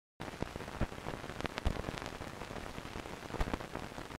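Old-film crackle effect: a steady hiss dotted with irregular clicks and pops, starting a fraction of a second in after a moment of silence.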